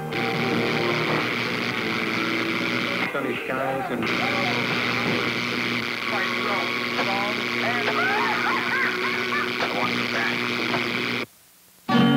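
Radio and TV reception swamped by heavy static interference: a steady hiss and buzz with warbling whistles and garbled snatches of broadcast voice and music. It dips briefly about three seconds in and cuts off abruptly just before the end. This is the interference that spark-plug ignition can cause, which resistor plugs suppress.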